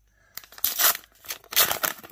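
A Select Footy Stars trading card pack's wrapper being torn open by hand: two loud rips about a second apart, with crinkling of the wrapper around them.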